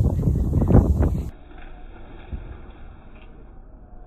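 Wind buffeting a phone microphone for about the first second, then it cuts off suddenly to a faint, steady background hiss.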